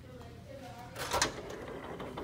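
A building door being pushed open, with a short latch-and-hinge clunk about a second in.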